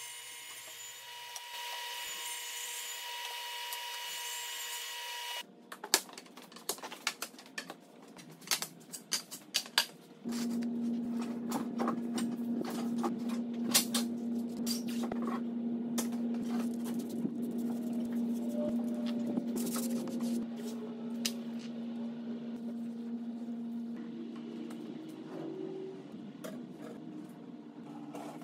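Workshop handling sounds: plywood panels and blue masking tape being laid out and taped together, with scattered clicks, taps and tape noises. A steady hum and whine runs through the first five seconds, and a steady low hum runs under the later part.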